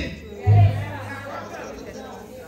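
A low bass note from the church band comes in about half a second in and dies away over about a second, under faint chatter from the congregation.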